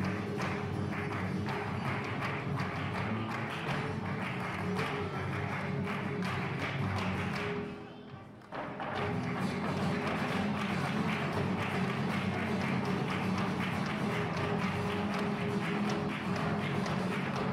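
Live flamenco: Spanish guitar with rapid hand clapping (palmas) and the dancer's heel-and-toe footwork striking the stage boards. The sound drops away briefly about halfway through, then comes back in full.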